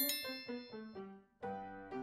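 A short chime sound effect marking a section change: a bright bell-like strike, then a quick run of short ringing notes that fade out, and a second brief chime about one and a half seconds in.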